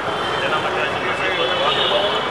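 A man speaking into a bank of microphones, with steady street traffic noise behind his voice.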